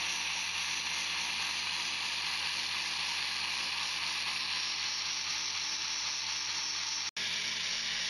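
3D-printed belt-driven supercharger running on its test rig: a steady airy hiss from the spinning compressor with a faint low hum beneath. The sound drops out for an instant about seven seconds in.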